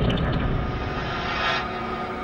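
Whooshing dramatic sound effect over a held drone, swelling to a peak about one and a half seconds in.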